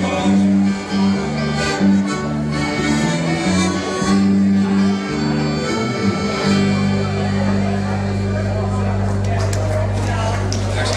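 Live dance band of electric guitars, bass, drums and accordion playing. About six and a half seconds in, the moving notes stop and the band holds one long final chord.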